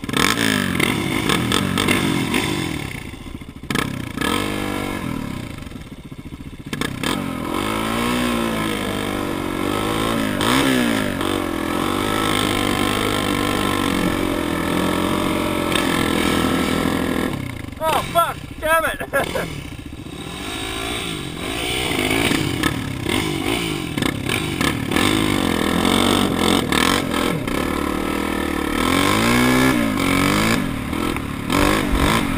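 Dirt bike engines running close by, revved up and down over and over. About eighteen seconds in, a different, fluttering engine note passes close, and near the end an engine climbs in pitch as a bike pulls away.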